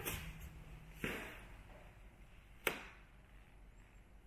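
Footsteps and knocks on a hard laminate floor in an empty house: three separate knocks, the last and sharpest about two and a half seconds in.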